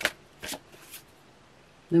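A deck of tarot cards being riffled by hand: a sharp riffle right at the start and a second about half a second in, trailing off into a soft rustle of cards.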